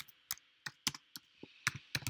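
Typing on a computer keyboard: about seven separate key clicks at an uneven pace.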